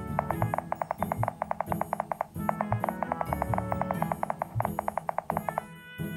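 Rapid clicking of smartphone keyboard taps, about ten a second, in two runs with a short break about two seconds in, over background music.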